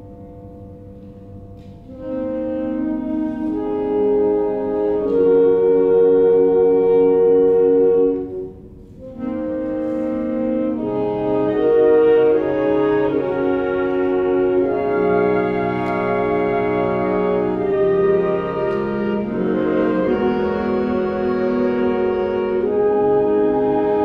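A concert band of woodwinds and brass plays live, in sustained chords. A soft held tone opens, the full band comes in about two seconds in, and it breaks off briefly just after eight seconds before going on with slowly shifting chords.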